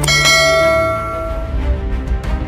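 A single bright bell-like chime struck just after the start, ringing out and fading over about a second and a half, over outro theme music.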